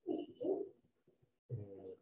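A bird cooing softly: two short notes in quick succession.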